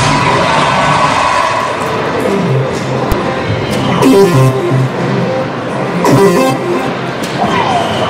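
Electronic soft-tip dart machine playing its jingles and sound effects: a short melodic tune, a couple of brief swooshing effects, and a falling whistle-like tone near the end, over a background of hall chatter.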